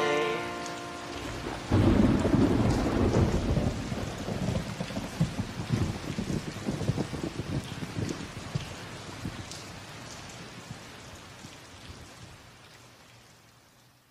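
A song's last notes die away, then a thunderclap breaks about two seconds in. Rain and rumble follow, fading out slowly.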